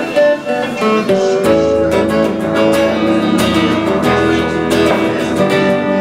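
Electric guitar in a clean tone, picking and strumming chords in an instrumental passage with no singing. The playing grows fuller and steadier about a second and a half in.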